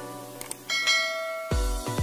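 Two quick mouse-click sound effects, then a bright notification-bell chime that rings for most of a second over intro music. About one and a half seconds in, an electronic beat with heavy bass kicks starts.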